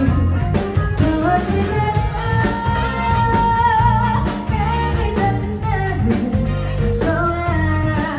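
Live band playing: a woman singing lead over electric guitar and a steady drum beat, with a saxophone joining in.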